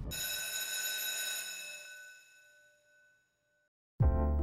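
A single struck bell-like ding that rings out with a bright, shimmering tone, fades over about three seconds and cuts off shortly before the end.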